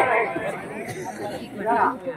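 Chatter of several overlapping voices, with one voice briefly louder near the end.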